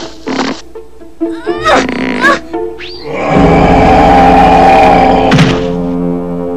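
Cartoon soundtrack: a few short effects and brief gliding cries in the first three seconds, then loud music swelling in about three and a half seconds in, with a sharp thud near the end.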